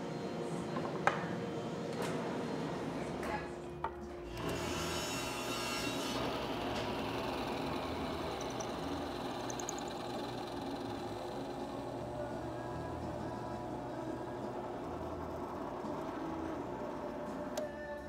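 Benchtop drill press running and boring into a block of laminated skateboard plywood, a steady machine sound with a brief dip about four seconds in.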